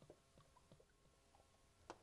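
Near silence, with a few faint ticks and one slightly sharper tick near the end.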